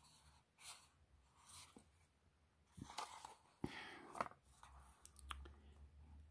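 Faint handling sounds of a Maserin card knife box being opened: soft paper rustles and a scattered series of small clicks as an olive-wood lockback folding knife is slid out, most of them in the second half.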